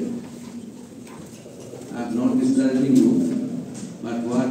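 A man's voice speaking through a microphone and PA in a hall, drawn out, with a pause of about a second and a half before he resumes.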